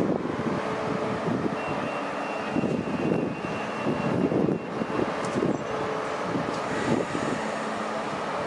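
Renfe Serie 447 electric commuter train setting off from the platform: a steady electrical hum and rumble, with a thin high whine for about three seconds starting a second and a half in.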